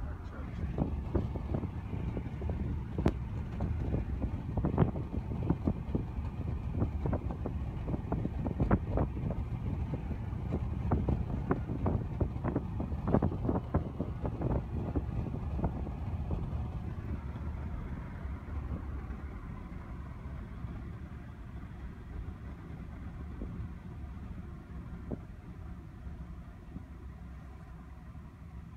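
Cabin noise of a moving taxi: a steady low rumble of road and engine, with frequent short knocks and rattles over the first half that then die away, the rumble easing a little near the end.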